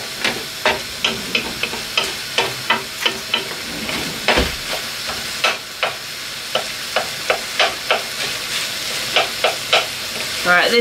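Beef mince sizzling as it browns in a non-stick frying pan, stirred with a wooden spoon in quick scraping strokes, about three a second. One heavier knock of the spoon against the pan about halfway through.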